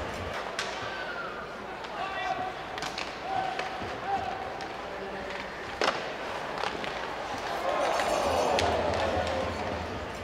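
Ice hockey rink sound: scattered knocks of sticks and puck over a steady hum of crowd voices, with a single sharp crack about six seconds in. Voices rise briefly near the end.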